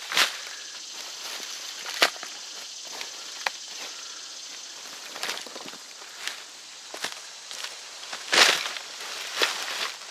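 A bundle of dry sticks dropped onto a pile on the forest floor, then scattered crunching footsteps on dry leaves and twigs and the rustle of a canvas cloth being gathered up, the loudest crunch about eight seconds in.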